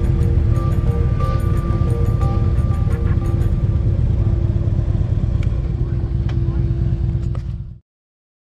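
Low, steady rumble of a Harley-Davidson touring motorcycle rolling at low speed, with music playing over it and a long held note. All sound cuts off suddenly near the end.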